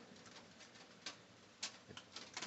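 Near silence: faint room tone, with two faint clicks about a second in and half a second later.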